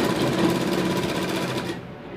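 Sewing machine running, stitching a seam along a folded edge of fabric with a fast, even rattle of the needle mechanism, and stopping abruptly just before the end.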